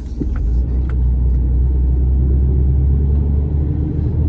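Truck's diesel engine and road noise heard from inside the cab, a steady low rumble that grows louder about half a second in and then holds.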